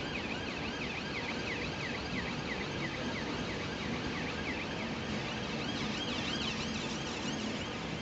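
Wheels of a Class 390 Pendolino electric train squealing as it moves slowly over curved pointwork. The squeal is high and warbling, rising and falling a few times a second over a steady rumble.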